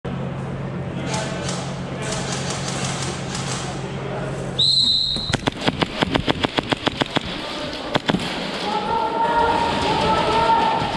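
A steady low hum, then about four and a half seconds in a loud high electronic buzzer sounds for under a second, typical of an airsoft arena's game-start signal. Straight after it comes a fast run of about ten sharp clicks, about five or six a second, then two more clicks near eight seconds and voices near the end.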